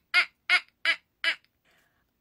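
A woman laughing in four short, evenly spaced 'ha' bursts, about three a second, stopping about one and a half seconds in.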